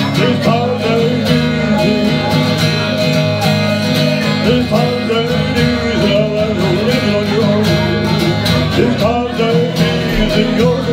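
Acoustic guitar strummed steadily while a harmonica on a neck rack plays a bending melody line over it: the instrumental introduction to a country-folk song, with no singing yet.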